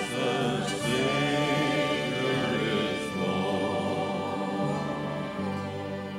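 Choir singing a hymn in sustained, held notes with lead voices and steady low accompaniment, growing softer near the end.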